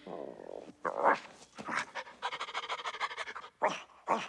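A cartoon dog's vocal sound effects: short breathy panting sounds, a fast run of rapid pulses in the middle, and one more breath near the end.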